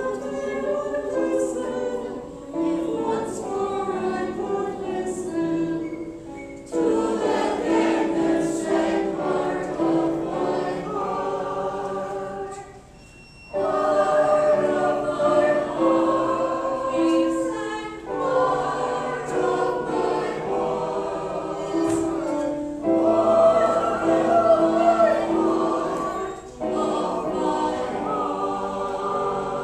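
A mixed choir of men's and women's voices singing an old popular song in unison-and-harmony phrases, with short breaths between lines and one clear pause about halfway through.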